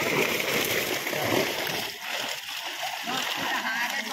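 Water splashing as many fish thrash and leap inside a drag net pulled in across a pond, heaviest in the first two seconds, with men's voices underneath.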